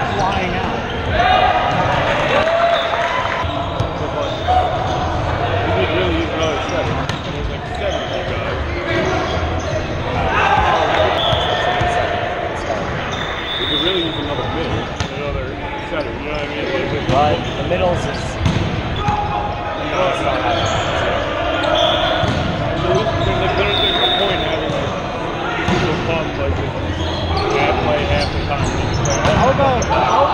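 Echoing gym ambience of a volleyball match: players calling and shouting over one another, with volleyball hits and thuds on the hard court. A few short high-pitched squeaks cut through now and then.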